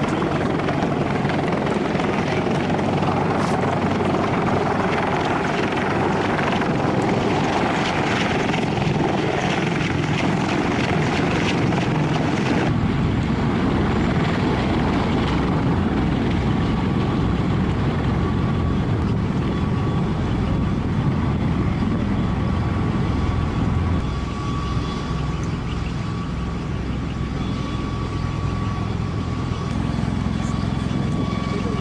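Loud, continuous rotor and engine noise from an MV-22 Osprey tiltrotor close by. A little under halfway the sound changes abruptly to a deeper, beating rotor sound, with a faint steady whine in the later part.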